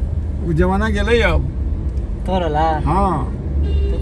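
Two short stretches of talking inside a moving Suzuki car, over the car's steady low engine and road rumble in the cabin.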